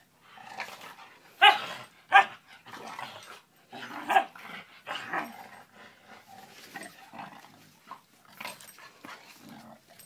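A puppy and a larger dog play-fighting, with a string of short barks and growls. The loudest come about one and a half and two seconds in, and more follow through the rest.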